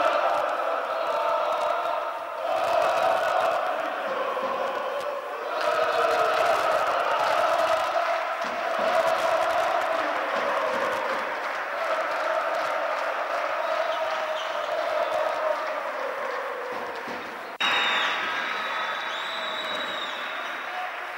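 A large group of fans chanting together, the chant going in repeated phrases that swell and fall. About seventeen seconds in, it cuts abruptly to a brighter crowd noise with a couple of short whistles.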